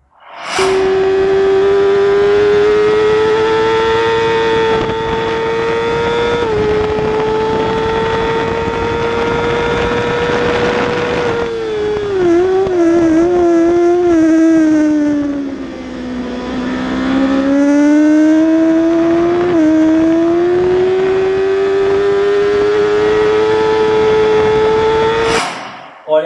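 Kawasaki ZX-6R 636 inline-four engine at high revs, recorded on board the bike with wind rush. The pitch climbs slowly on a straight, then from about halfway through falls in a series of wavering steps as the rider brakes and downshifts for a corner, and climbs again as he accelerates out; it cuts off shortly before the end.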